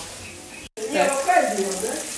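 Fish steaks sizzling in hot oil in a cast-iron frying pan, a steady hiss that starts suddenly about a third of the way in.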